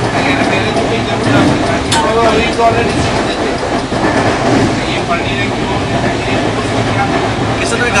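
Double-decker AC express passenger coach running at speed, heard from inside the cabin: a steady rumble of wheels on rail with a few faint clicks over the track. Passengers' voices murmur in the background.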